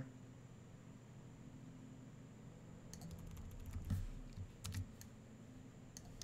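A few faint, short clicks and taps from a computer keyboard and mouse, starting about halfway through, over a low steady hum.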